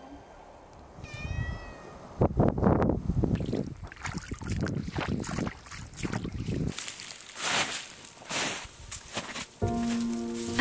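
Boots squelching and splashing step by step through wet mud and meltwater slush. A short, high call from an animal comes a second before the steps.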